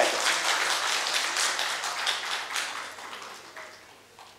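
Audience applause, many hands clapping, loud at first and dying away over about three and a half seconds.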